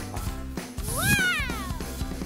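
A single drawn-out 'wow' in a high voice, rising and then falling in pitch, about a second in, over background music with a steady beat.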